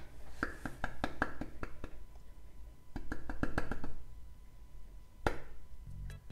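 Flour being shaken in small amounts from a glass jar into a mixing bowl on a kitchen scale: a run of light clicks and taps in two short clusters, with one sharper click near the end.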